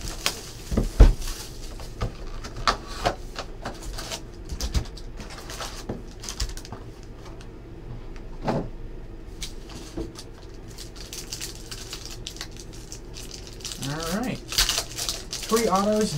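Plastic shrink-wrap being torn off a cardboard trading-card box, then foil-wrapped card packs taken out and set down in stacks: crinkling plastic with scattered taps and clicks.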